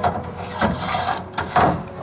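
A starting handle being fitted to and engaged with the crank of a vintage car's engine: three metallic clunks and rattles, the loudest near the end.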